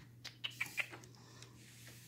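A few faint, quick clicks and ticks in the first second, over a low steady hum.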